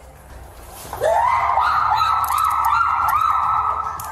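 A woman's long, loud scream that starts about a second in, sweeps sharply up in pitch, then holds high with a repeated wavering until near the end.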